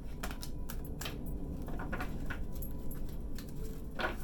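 Tarot cards being shuffled and handled, a run of quick, irregular card flicks and snaps, ending as a card is drawn and laid on the table.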